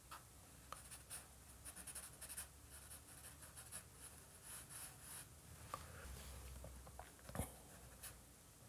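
Faint scratching of a compressed charcoal stick on drawing paper, in short irregular strokes, with a soft knock near the end.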